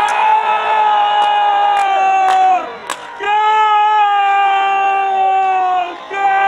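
A goal-celebration cry: a voice shouting a long, drawn-out 'gooool', held about two and a half seconds and sagging in pitch at the end, then shouted again after a short breath. A few sharp clicks sound over it.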